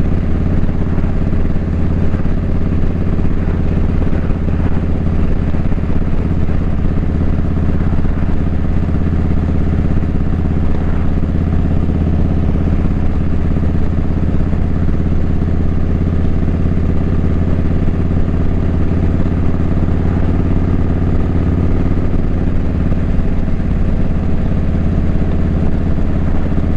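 Motorcycle engine running steadily at an even speed: a low drone with no revving, unchanged throughout.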